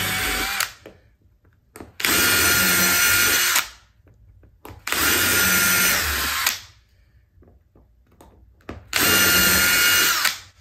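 DeWalt Xtreme cordless drill with a 5/64 bit drilling pilot holes through a steel spring hinge's screw holes. It runs in short spurts: one ending about half a second in, then three more of about a second and a half each, at a steady speed with pauses between.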